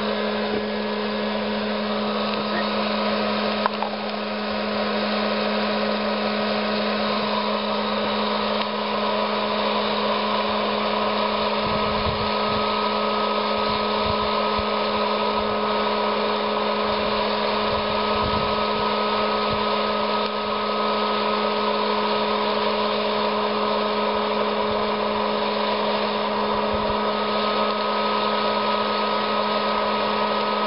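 Hot-air popcorn popper (900 W) running steadily, its fan motor humming as it blows hot air through roasting coffee beans after first crack has finished. A few low knocks come near the middle.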